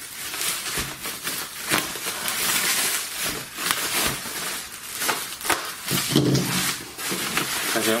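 Bubble wrap and plastic tape being pulled and torn open by hand, crinkling and crackling with many sharp clicks, busiest a couple of seconds in.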